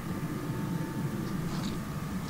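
Steady low outdoor background rumble with a faint, even hum above it.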